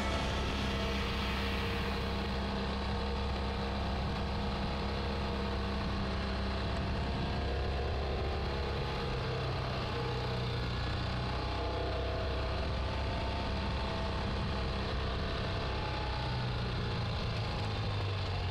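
Ural Gear Up sidecar motorcycle's air-cooled boxer-twin engine running steadily on the move, heard from on board. Its pitch shifts slightly about halfway through and again near the end.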